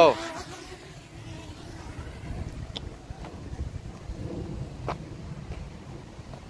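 Wind buffeting the microphone, an uneven low rumble, after the tail of a drawn-out exclaimed "oh" at the very start; a couple of faint clicks fall near the middle and shortly before the end.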